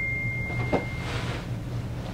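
A steady high electronic tone that stops about a second in, with a soft knock just before it ends, over a low hum.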